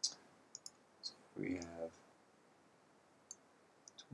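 Computer mouse button clicking a handful of times, short sharp clicks spread out with uneven gaps, the first one the loudest, as the mouse is used to hand-draw with an on-screen drawing tool.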